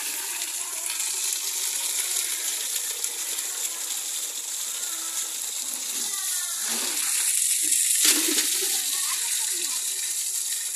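A strong jet of water gushing from a pump's outlet pipe and splashing into metal buckets as they fill, a steady rushing noise. A sharp knock comes about eight seconds in.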